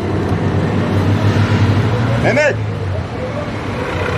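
Street traffic noise with a motor vehicle engine running close by, a steady low hum that is strongest around the middle. A short burst of a man's voice comes in about halfway through.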